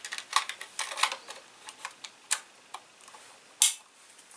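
Small clicks and rattles of a magazine being fitted into the magazine well of a Cyma CM.702 M24 spring airsoft sniper rifle, with one loud click near the end.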